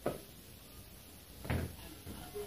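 A football thumping twice in a room: a short knock at the start and a louder, deeper thud about a second and a half in.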